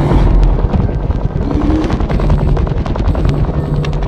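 Loud, rapid rattling clatter over a low rumble.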